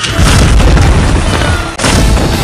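Fireworks explosion sound effects over music: a loud boom at the start with a long low rumble, and a second boom near the end.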